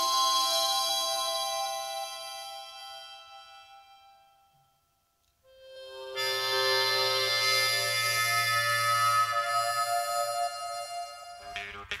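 Sustained chords from a wind instrument played live into a microphone: the first chord fades away over the first four seconds or so, then after a brief silence a second chord comes in about five and a half seconds in and holds. Quick percussive clicks start just before the end.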